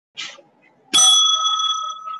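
A single bell strike with a sharp onset about a second in. It rings with a few clear high tones that slowly fade, and a brief soft hiss comes just before it.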